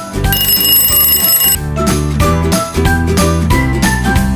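A bell-ringing alarm sound effect rings for about a second, shortly after the start, signalling that the quiz time is up. Background music with a drum beat and bass line plays throughout.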